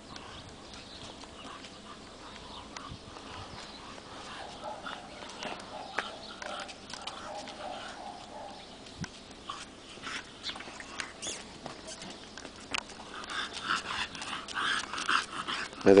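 Bulldog puppy making faint vocal sounds as it walks, over scattered footstep clicks on cobblestones. The dog sounds grow louder and busier in the last few seconds.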